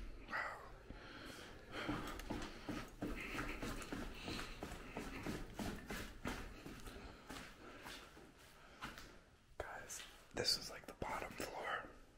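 Low, whispered talk that stays too quiet to make out words, with scattered clicks and scuffs of footsteps on gritty steps and debris.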